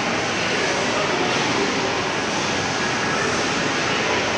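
Steady, even rushing background noise of a busy indoor space, such as ventilation or air-conditioning hum, with faint voices underneath.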